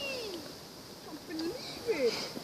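Faint, distant shouts and calls from children, several sliding down in pitch.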